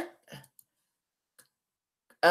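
A few faint computer mouse clicks in the quiet between spoken phrases, the clearest about a third of a second in and another about a second and a half in.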